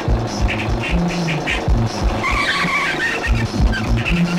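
Film background music with a steady drum beat; about two seconds in, a motorcycle skid, a screech lasting about a second.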